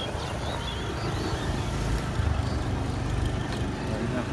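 A motor vehicle's engine running with a steady low rumble, with a few faint bird chirps above it.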